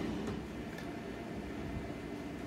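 Quiet, steady low hum and hiss: room tone.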